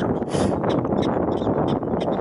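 Steady wind buffeting the microphone, with a prairie dog's series of short calls over it.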